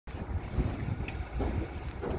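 Low, unsteady rumble of wind or handling noise on a handheld microphone, with a faint click about a second in.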